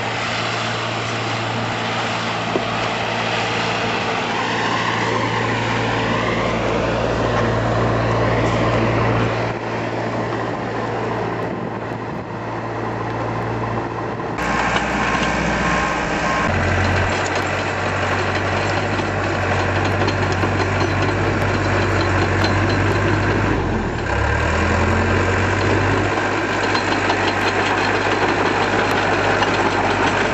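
Heavy-equipment engines running steadily, from a Case crawler dozer and an excavator. The engine note shifts in pitch about halfway through.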